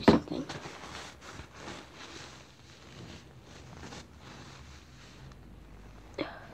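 Handling noise on a phone's microphone: a sharp knock right at the start, then soft rustling and scraping that fades away.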